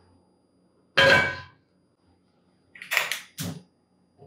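A cast iron skillet set down on a gas range's grate: one loud clang about a second in that rings briefly, then a few quieter metal knocks about three seconds in.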